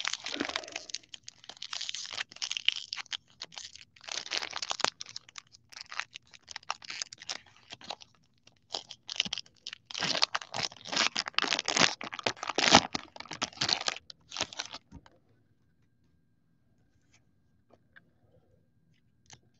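Foil trading-card pack wrapper being torn open and crinkled by hand, in irregular clusters of sharp crackling that are loudest about two-thirds of the way through and stop about 15 seconds in.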